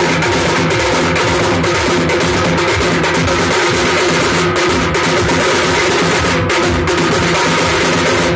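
Muharram drumming (Moharmi dhun): several stick-played side drums and a rope-tensioned barrel drum (dhol) beating a dense, continuous rhythm together, loud and steady throughout.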